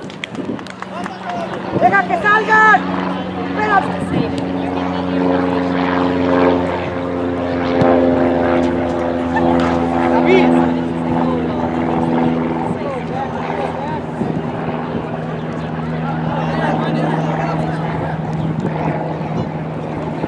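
A steady, low engine drone holding one pitch, dipping slightly about halfway through, with a few brief shouted voices near the start.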